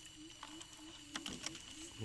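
A few faint, light clicks from a clear plastic bottle being handled as a dug-up cricket is dropped in. Behind them runs a faint, low, pulsing drone of unclear source.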